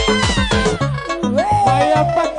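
Loud live house dance music from a single-keyboard band: a fast, steady kick drum under a gliding lead line, with a falling sweep at the start and a long held note from about halfway that slowly drops in pitch.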